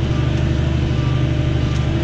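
Tractor diesel engine running steadily under load while pulling a plough, heard from inside the cab as an even low drone.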